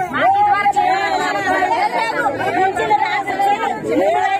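Speech only: women talking, more than one voice.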